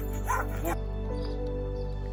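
Two short, high dog cries in the first second, over steady background music.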